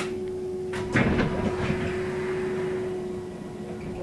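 Ride noise inside a VDL Citea SLE-129 Electric bus on the move: a steady hum under road noise, a sudden knock about a second in followed by a rush of noise that fades over a couple of seconds, and another knock right at the end.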